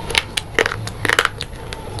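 Close-miked crunching as a dry, crumbly grey substance is bitten and chewed: a run of crisp, sharp crunches, thickest about a second in.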